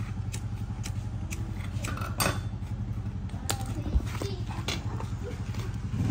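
Parts of a sprayer pump head being handled on the floor, with scattered clicks and a few sharper knocks about two to four seconds in, over a steady low mechanical hum.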